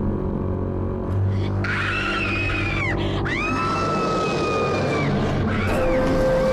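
Dramatic background music with a high-pitched cry laid over it from about a second and a half in: a short arching call, a sharp drop, then one long held cry that breaks off about five seconds in.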